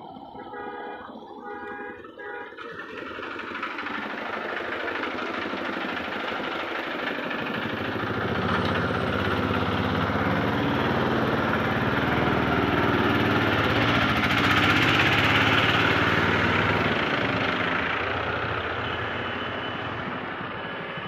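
A vehicle engine running with road noise, growing steadily louder over several seconds. It is loudest about three quarters of the way through, then fades near the end.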